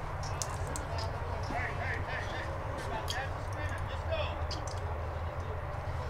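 Indistinct murmur of spectators' voices, too faint to make out, over a steady low rumble, with scattered faint clicks.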